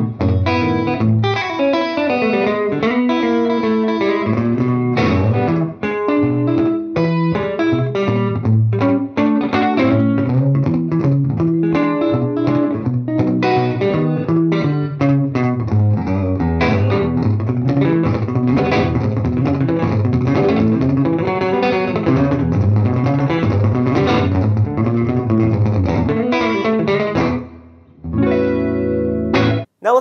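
Electric guitar with Tone Specific 1958 Twang PAF humbuckers, played through an amp on the neck pickup. Picked single-note lines and chords carry a fuzzy warmth, a warm bottom end and a bright, defined top. Near the end the playing pauses briefly and closes on a held chord.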